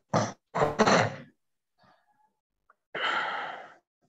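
A person's breath sounds: two sharp exhalations in the first second or so, the second one louder, then a longer sigh-like breath about three seconds in.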